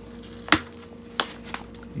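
Sharp clicks from a connector on the front of a tool bag being unclipped: one loud click about half a second in, a second about a second later and a fainter third soon after.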